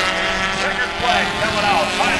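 Four-cylinder Dash Series stock cars racing on a short oval, their engines running hard at speed, with a steady drone and the pitch sliding up and down.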